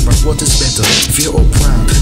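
Hip hop track: a beat with heavy bass and regular drum hits, with a rapping voice over it.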